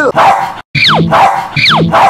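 Dog barking and yelping, a repeated cry about once a second, each one sliding sharply down in pitch.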